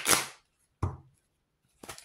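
A deck of tarot cards being handled: a short scraping rush of cards at the start, then a few light clicks near the end as shuffling begins.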